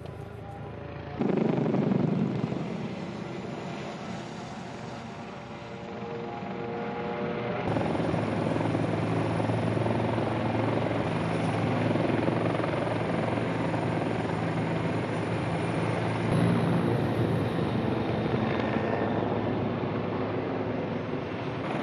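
Helicopter flying, a steady low hum of rotor and engine that builds up and holds from about a third of the way in. About a second in, a sudden loud rush of noise fades over a few seconds.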